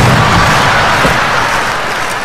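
Large concert audience applauding, loud and even, just as the orchestra's music stops, slowly easing off.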